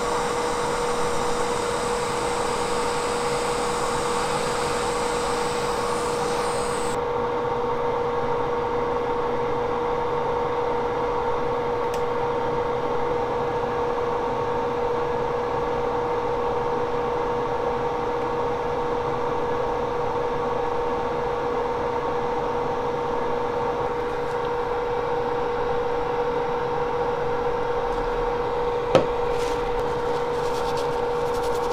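Hot-air rework station blowing on a BGA flash memory chip to melt its solder for removal. Its hiss cuts off suddenly about seven seconds in, leaving a steady machine hum with a fixed tone. One sharp click near the end.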